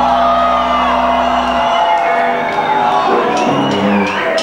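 Live punk-rock band letting a chord ring out through the amplifiers, the low bass note stopping about one and a half seconds in, while the audience shouts and whoops. A few sharp hits come near the end.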